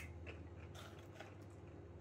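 Very quiet, with a low steady hum and a few faint short crunches and clicks of a Doritos tortilla chip being bitten and chips being handled in a bowl.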